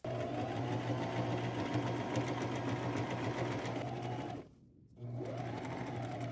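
Electric sewing machine running steadily as it zigzag-stitches around the edges of an appliqué, stopping for about half a second around four and a half seconds in, then speeding up and running again.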